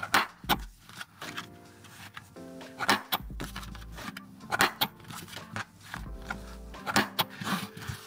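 A handheld corner cutter punching off the corners of a paper business card: several sharp clacks, some in quick pairs, over background music.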